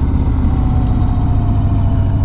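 A 1991 Harley-Davidson Dyna Glide Sturgis's 1340 cc Evolution V-twin engine running steadily as the motorcycle cruises, heard from the rider's seat.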